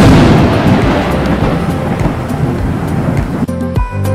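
A sudden loud clap of thunder that rumbles on for about three and a half seconds; background music comes back in near the end.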